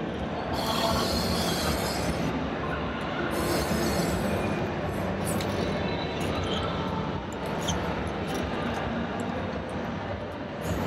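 Steady background noise of a large exhibition hall, a continuous even rumble and hiss with no distinct events.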